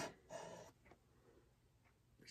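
Mostly near silence, with one brief soft swish about half a second in: a damp microfiber cloth wiped across a plastic cutting board.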